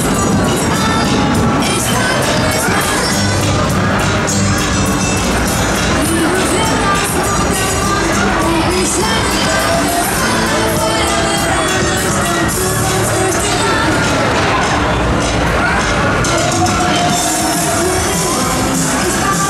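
Loud fairground ride music with a steady beat, with riders on a swinging pendulum ride screaming and cheering over it.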